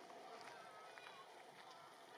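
Near silence: faint outdoor background with distant voices.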